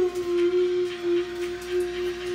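A woman's voice holding one sung note at a steady pitch, sliding down into it just before it settles.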